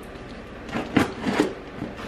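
A cardboard shipping box being opened by hand: a handful of short, sharp rustles and knocks of cardboard and packing, starting about a second in.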